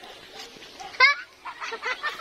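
A single short, high-pitched cry that rises and falls in pitch, about a second in, with fainter scattered calls after it.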